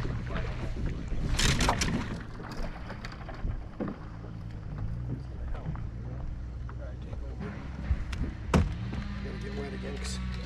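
A hooked largemouth bass splashing at the water's surface as it is brought to the boat and netted, loudest about a second and a half in. A steady low hum runs underneath, and there is a single sharp knock near the end.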